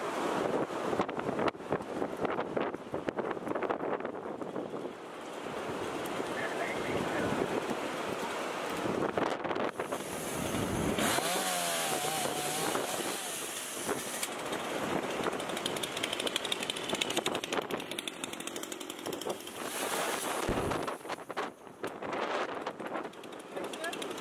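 Dolmar chainsaw running and revving briefly about halfway through, over steady outdoor noise with people talking.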